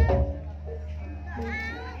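Javanese gamelan music accompanying a buto dance, with steady pitched notes and a deep low drum or gong stroke, the loudest sound, right at the start. Children's voices call out over it, highest near the end.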